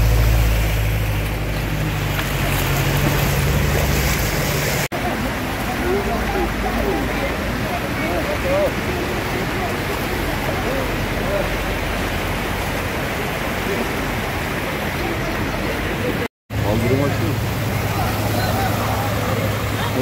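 Floodwater rushing and splashing along a street, with a vehicle's engine running low for the first few seconds and again near the end as cars drive through the water. Voices talk in the background through the middle.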